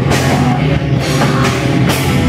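Heavy metal band playing: keyboard, electric guitar and drum kit together, loud and dense, with cymbal crashes near the start and near the end.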